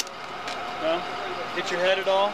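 Indistinct voices talking under a steady background hum, with a sharp click right at the start.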